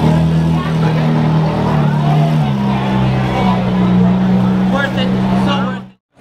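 Ferrari 458's V8 engine running at low revs as the car rolls slowly away, a steady deep note that steps in pitch a couple of times. The sound fades out quickly near the end.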